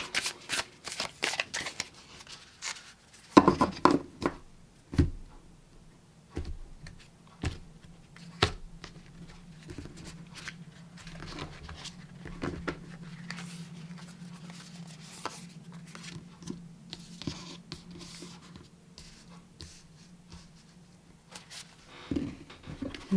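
A deck of tarot cards being handled and shuffled, then cards drawn and laid on a cloth-covered table: irregular soft rustles and clicks, loudest about three to four seconds in. A faint steady hum underneath in the second half.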